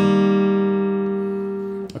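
Fylde Falstaff acoustic guitar: a fingerpicked chord rolled across the fifth, fourth and third strings, left ringing and slowly fading. A short click near the end stops it.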